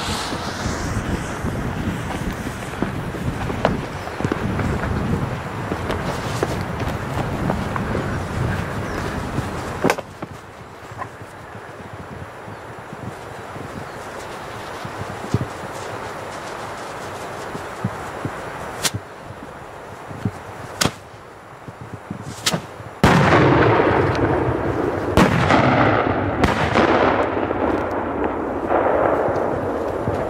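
Three 3-inch firework shells fused together and set off on the ground. A steady rushing noise runs for the first ten seconds, then comes a sharp bang and a few single cracks spread apart. Near the end there is a loud sudden burst with more bangs. The chain does not go off as meant: the blast of one shell knocks the other away.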